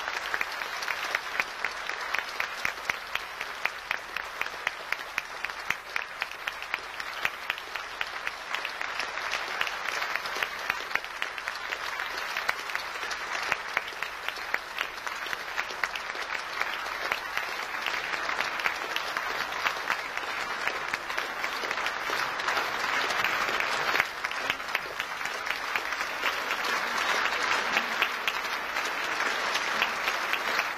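Concert hall audience applauding steadily, many hands clapping at once, swelling somewhat louder in the second half.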